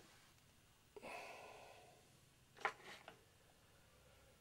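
Near silence, with a soft exhale of breath about a second in and a couple of faint clicks from the coat-hanger wire being handled.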